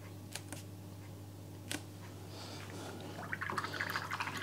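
Quiet studio with a low steady hum and a few faint taps, then from about halfway through soft splashing and light clinks of a paintbrush being rinsed in a water pot.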